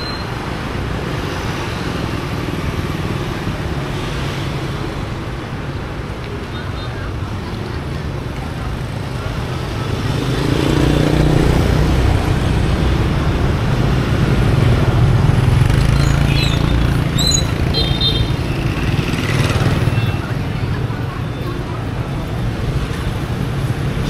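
Street traffic, mostly motorbikes and scooters running past. It grows louder from about ten seconds in as they pass close by, with voices in the background.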